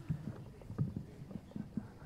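Soft, irregular knocks and thumps, about five a second, with no speech.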